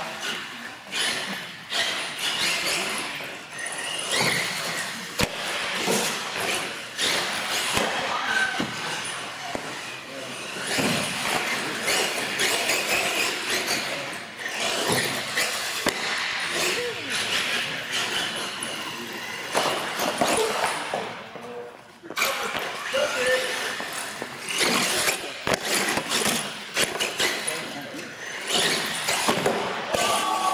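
Radio-controlled monster truck driving and jumping ramps on a concrete floor, with repeated sharp knocks from landings and wheel impacts. Indistinct voices of onlookers run underneath.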